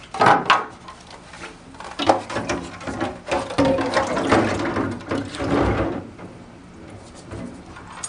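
Plastic ice-machine parts being set down into a stainless steel sink of cleaning solution to soak: a sharp knock about half a second in, then a few seconds of clattering and sloshing as the pieces go into the water.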